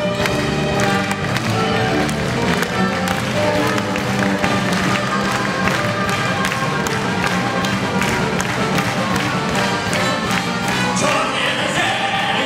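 A live orchestra with violins and percussion playing a brisk instrumental passage of a pop song, the strings holding notes over a steady, regular percussion beat. Near the end the sound grows fuller.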